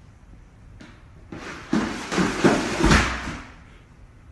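Plastic laundry basket tumbling down wooden stairs: a run of clattering bumps lasting about two seconds, with the heaviest thud near the end as it reaches the bottom.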